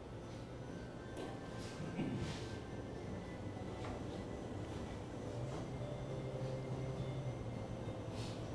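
Quiet hall ambience: a low steady hum with a few faint soft rustles in the first few seconds.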